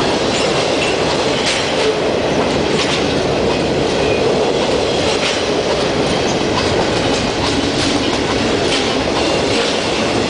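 Double-stack intermodal freight train rolling past close by: a steady loud rumble and rattle of steel wheels on the rails, with irregular sharp clicks every second or two.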